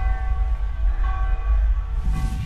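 Title-card intro music: a deep bass rumble under a held chord of several steady tones, struck again about halfway through.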